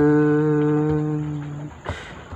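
A man singing a cappella, holding one long, steady note that slowly fades. He takes a quick breath just before the end.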